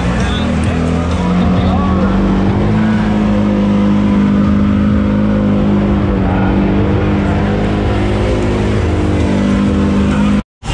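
Off-road side-by-side engine running hard at fairly steady revs while driving through deep mud, its note stepping up slightly about three seconds in.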